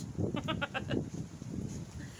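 A woman laughing: a quick run of about seven short, pitched 'ha' pulses within the first second.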